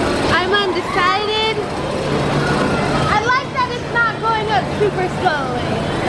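Wordless squealing and wailing voices, high and sliding up and down in pitch, over a constant outdoor rumble. A steady low drone comes in about two seconds in and lasts about three seconds.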